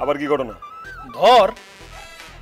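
A man's wordless vocal sounds, with a loud exclamation that rises and falls in pitch about a second in, over background music.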